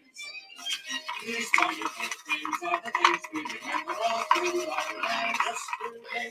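Acrylic paint being stirred in a small cup for pour painting, the stirring stick scraping and tapping against the cup's sides in quick, irregular clicks.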